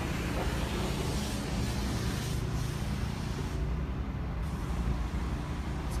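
Steady low rumble with hiss: outdoor background noise in a truck lot.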